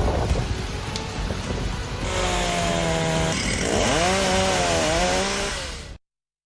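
Chainsaw cutting through a fallen tree, its engine running hard; partway through its pitch dips and climbs again as the chain bites into the wood, and it cuts off suddenly at the end. Before it starts, about two seconds of rushing noise.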